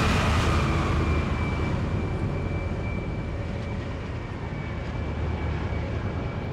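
Large mining haul truck driving past, its engine rumble and tyre noise loudest at the start and slowly fading as it moves away. A thin, steady high whine runs along with it.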